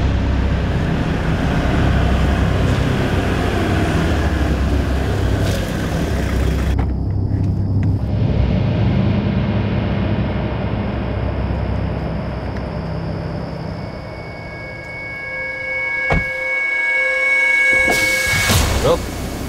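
Deep, steady rumble of a car engine with road noise, easing off about three-quarters of the way through. Near the end a sharp click is followed by a few steady high tones held to the end.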